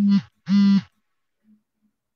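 A man's voice: two short, drawn-out syllables held at a steady pitch in the first second, then near silence.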